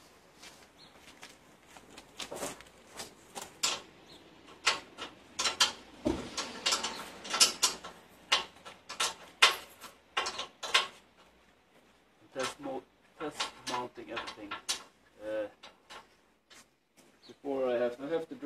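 Steel tow bar and the bumper's metal frame knocking and clanking irregularly as they are handled and fitted together.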